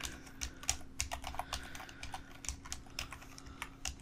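Computer keyboard typing: an irregular run of quick key clicks, over a faint steady hum.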